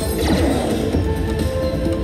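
Ultimate Fire Link slot machine's bonus-round music, with a crashing hit effect in the first half-second as a fireball lands on the reels and the spin count resets.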